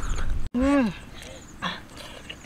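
A woman's short hummed "mmm" of enjoyment while eating, rising then falling in pitch, just after an abrupt cut in the sound; a brief breathy noise follows later on.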